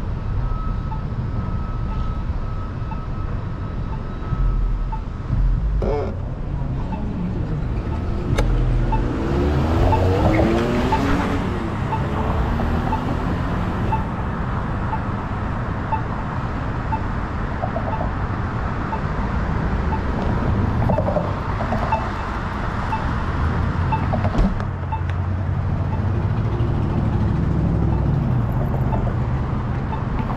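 City street traffic: a steady low rumble of cars, with a vehicle passing about ten seconds in and a faint, regular ticking running underneath.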